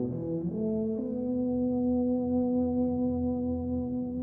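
A wind ensemble with a solo tuba playing a slow passage: a few short changing notes, then a long chord held steady from about a second in.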